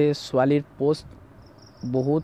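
A man talking in short phrases that break off about a second in. In the pause a faint, high, steady tone is heard in the background before he speaks again near the end.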